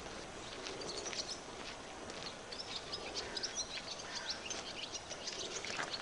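Small birds chirping in quick, repeated short calls over a steady outdoor background hiss.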